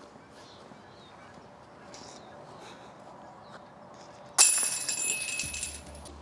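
Disc golf basket's metal chains hit about four seconds in: a sudden jingling rattle of chain links that rings on and fades over a second or so.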